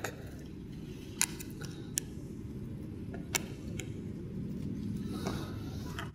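A few light, sharp clicks, about three spread over a few seconds, from hands working a mirrorless camera onto a gimbal's mounting plate, over a steady low background rumble.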